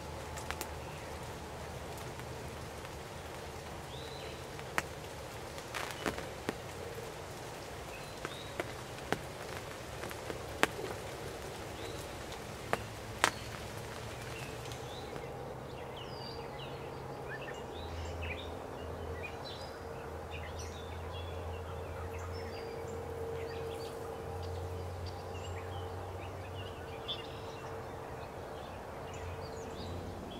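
Outdoor field-edge ambience with small birds chirping, the calls denser in the second half, over a steady low hum. A few sharp clicks or snaps sound in the first half.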